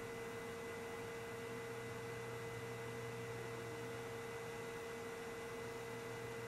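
Steady electronic hum over a faint hiss: one constant mid-pitched tone with fainter lower and higher tones, unchanging throughout.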